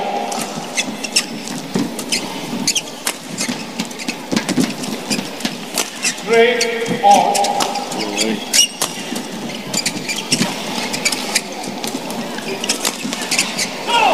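Badminton rally: rackets striking the shuttlecock as a string of sharp cracks, with players' shoes squeaking on the court mat. A cluster of squeaks comes a little past the middle.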